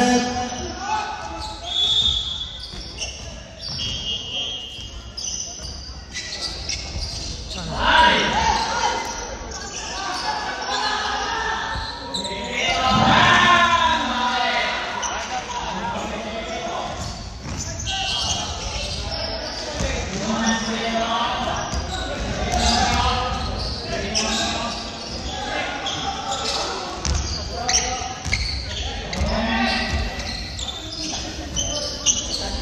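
Basketball bouncing on a hardwood gym floor, with players' voices ringing out in a large, echoing gymnasium; the voices are loudest about eight seconds in and again around thirteen seconds.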